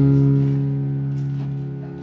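Live rock band's guitars playing one chord at the window's opening and letting it ring, fading slowly over about two seconds, between sung lines.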